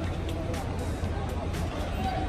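Steady low rumble of an idling car engine under a faint even background noise.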